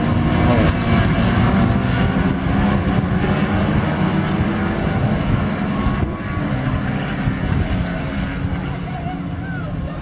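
Citroën 3CV race cars' air-cooled flat-twin engines running hard at high revs, the sound easing slowly over the seconds.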